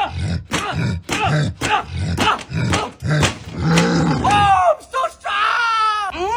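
A man grunting in a quick rhythm, about two to three grunts a second, with a smack on each as boxing-gloved punches smash watermelons. In the last second and a half a higher voice with sliding pitch takes over.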